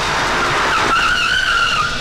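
Car tyres screeching as a saloon car brakes hard to a stop: one squeal, slightly wavering in pitch, starting a little before a second in and lasting about a second.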